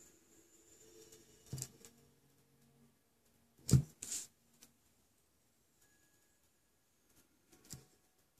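Quiet room with a few short handling knocks and clicks while tools are worked at the nail: one about one and a half seconds in, a louder pair near four seconds, and one near the end.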